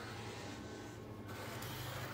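Pizza vending machine running with a steady low hum as it delivers the boxed pizza.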